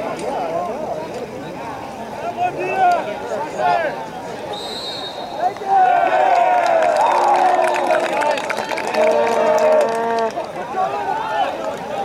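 Players and spectators shouting and calling across a soccer field, the words unclear. A referee's whistle sounds briefly about four and a half seconds in, and the shouting grows louder after it, with one long held call near the end.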